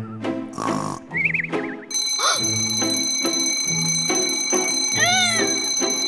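Cartoon snoring, a breathy inhale and a warbling whistle, then about two seconds in a shrill, steady high-pitched electronic security alarm starts and keeps sounding over light background music.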